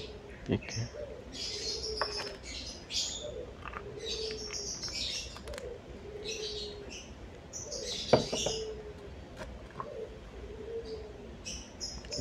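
Birds chirping in repeated shrill bursts, with low, curved hooting notes recurring about once a second underneath, and a single sharp knock about eight seconds in.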